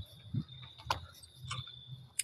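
Faint steady high-pitched trill of a cricket, heard through a phone's microphone, with a couple of soft clicks and a low hum underneath.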